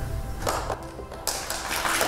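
Music, with a lecture-hall audience starting to clap a little over a second in, many scattered hand claps building into applause.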